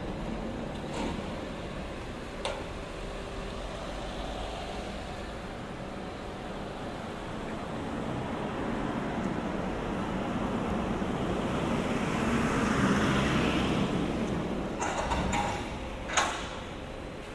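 Street traffic noise, with a vehicle passing that swells to its loudest about thirteen seconds in. A couple of short clicks early on, and a brief cluster of knocks near the end.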